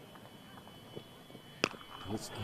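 Faint crowd ambience, then a single sharp crack of a cricket bat striking the ball about a second and a half in.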